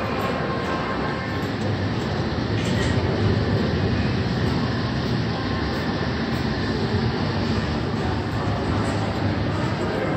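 Steady low rumble of an underground train, with no clear clatter or squeal.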